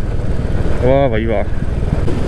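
Motorcycle engine running steadily while riding, a low, even beat of firing pulses underneath.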